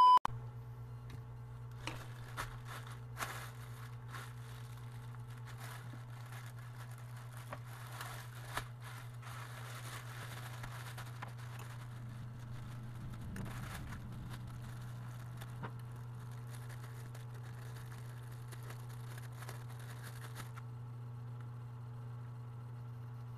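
Crinkling and rustling of a plastic courier mailer and its plastic wrapping being handled and torn open, with scattered sharp crackles that die away near the end, over a steady low hum.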